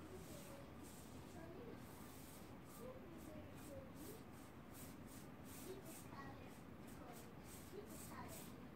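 Faint strokes of chalk paint being brushed onto a wooden bookshelf: short swishes, about two a second.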